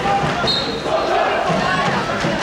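Football match sound: voices shouting over the field and the thuds of a football being kicked.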